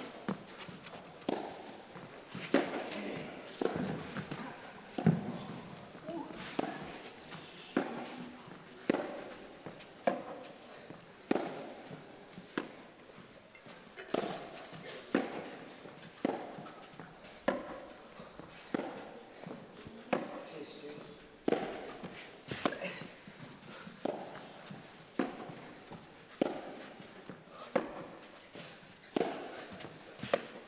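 A long touchtennis rally: a foam ball struck back and forth with rackets, a sharp hit a little more than once a second, each with a short echo from the hall.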